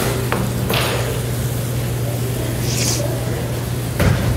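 Spatula scraping and tapping in a stainless steel bowl as batter is folded: a click and a couple of brief scrapes over a steady low hum.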